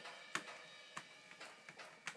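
Soft taps and clicks of a hand on the rubber Alesis DM10 electronic cymbal pad. The two clearest come about a third of a second in and at one second, followed by a few fainter ticks.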